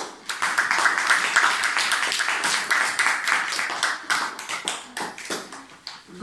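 A small group applauding: steady hand clapping that thins to a few scattered claps near the end.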